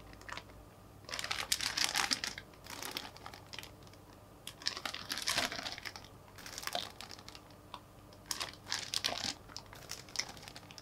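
Clear plastic bags around model-kit runners crinkling as they are handled, in several separate bursts of rustling with short pauses between.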